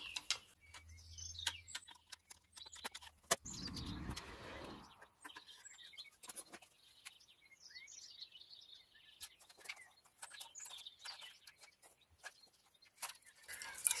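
Scattered small plastic clicks and taps as the fuel return line connectors are pried and pulled off a BMW N57 diesel's injectors with a screwdriver, with a brief rustle about four seconds in. Birds chirp faintly in the background.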